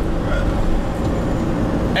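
Moving minibus heard from inside the cabin: steady engine and road noise, a low rumble.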